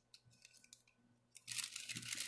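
Near quiet for about a second and a half, then loose sheets of paper rustling and crinkling as they are handled.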